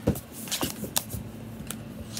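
Handling noise from a phone being moved in the hand: a few scattered clicks and rubbing sounds on the microphone.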